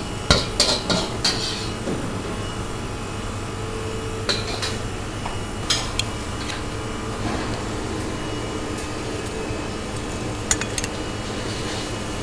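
Metal kitchen utensils clinking and knocking: a quick run of clatters in the first second or so as the wok is set aside, then scattered single clicks of stainless steel tongs. A steady low hum runs underneath.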